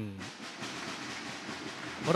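Steady, even hiss-like room noise of an indoor sports hall, with no distinct events.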